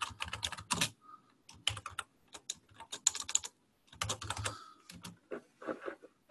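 Typing on a computer keyboard: irregular runs of quick key clicks with short pauses between them.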